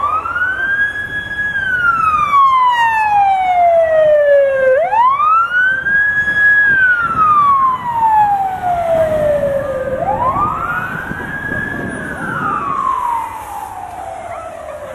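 Fire engine siren wailing: three slow cycles, each rising quickly in pitch, holding briefly and then falling slowly. It is loudest mid-way and fades near the end as the truck moves off.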